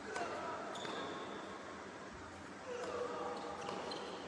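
Tennis rally on an indoor hard court: several sharp racket strikes and ball bounces, with short sneaker squeaks on the court surface.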